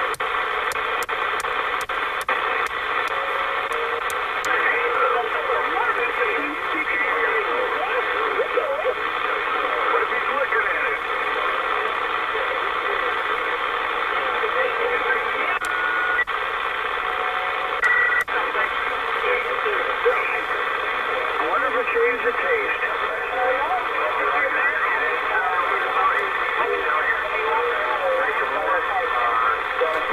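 Lower-sideband voice traffic on a President Lincoln II+ CB radio as it is tuned up through the channels. Several distant stations brought in by skip propagation talk over one another in a pileup, with steady static hiss under them and a narrow, tinny radio sound.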